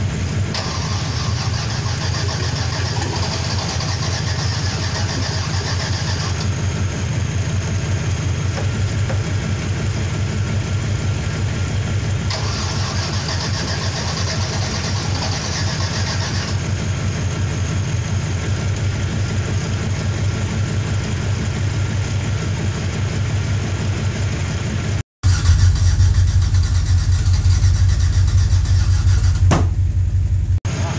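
Chevrolet 6.0 LQ4 V8 with a Stage 3 cam running at idle, a steady low engine pulse. Just after 25 s the sound cuts to a louder, deeper take of the same engine.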